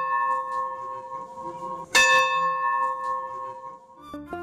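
A bell ringing with a clear, lasting tone. It is already sounding at the start, is struck again about halfway through and rings on, fading near the end.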